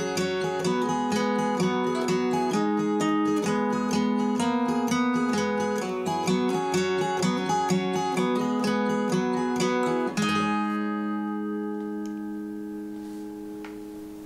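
Acoustic guitar playing the song's instrumental outro, ending about ten seconds in on a final chord that rings out and fades away.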